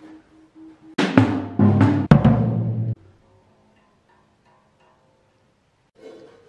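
Drum kit played hard in a short burst of rapid hits about a second in, lasting roughly two seconds and ending abruptly; after it only faint sustained notes are left.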